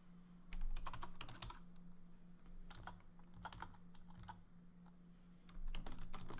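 Computer keyboard keys tapped in short, scattered runs of clicks, over a low steady hum.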